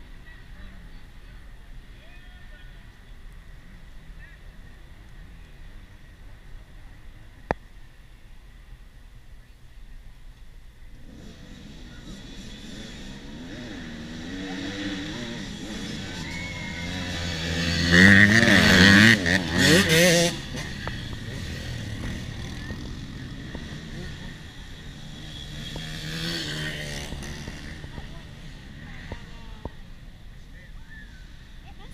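Youth mini dirt bikes approaching along a dirt track, their small engines revving up and down as they come, passing close and loudest about eighteen to twenty seconds in, then fading. Another bike passes more faintly near the end; the first ten seconds hold only faint background.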